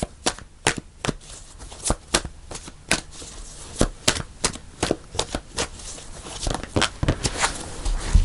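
A deck of tarot cards being shuffled by hand: a run of irregular sharp clicks as the cards knock together, a few a second.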